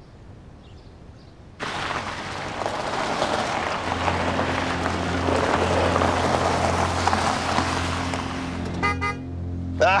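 Vehicles arriving with their engines running: a sudden rush of engine and road noise about a second and a half in, settling into a steady low drone.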